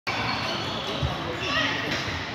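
Table tennis balls knocking on tables and bats across a large, echoing sports hall, under a steady murmur of voices, with a dull thump about halfway through.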